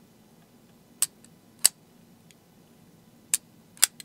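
Quiet Carry Nine titanium frame-lock folding knife being worked open and let fall shut: four sharp metallic clicks in two pairs, each pair about half a second apart, as the blade locks and snaps home on its detent. It is a really cool sound.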